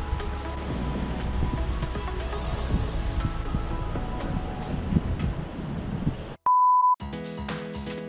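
Low street rumble and wind on the microphone under quiet background music. About six and a half seconds in, the ambience cuts out and a loud, steady beep sounds for about half a second. Then music with a beat begins.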